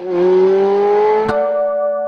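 Sound effect of a car engine revving, one pitched tone climbing slowly. Just past halfway a sharp click, and the sound settles into steady held tones like a short musical sting.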